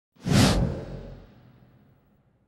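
A whoosh sound effect for an animated title logo, starting suddenly just after the start with a low rumble under it, then fading away over about a second and a half.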